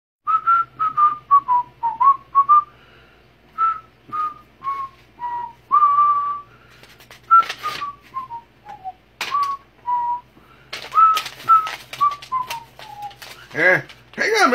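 A man whistling a tune: a single clear pitch in short notes that step and slide up and down. A few sharp rustles and clicks come in over the second half.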